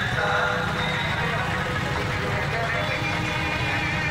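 Many motorcycle engines running at low speed in a packed slow-moving rally, under a crowd of voices shouting and talking. A steady, dense din with no breaks.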